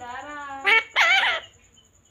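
Ringneck parakeet vocalizing: a held, slightly wavering note, then two short, louder calls that rise and fall in pitch about a second in.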